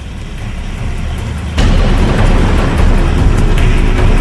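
Background music mixed with a car-driving sound effect. The sound swells over the first second and a half, then steps suddenly louder and runs on over a steady beat.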